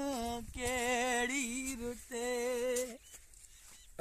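A voice carrying a slow tune in long, wavering held notes that stops about three seconds in.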